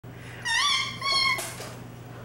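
A baby letting out two high-pitched squeals in quick succession, each about half a second long.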